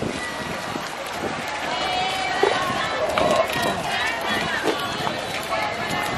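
Footsteps of a group walking on a walkway, with indistinct voices of people nearby talking.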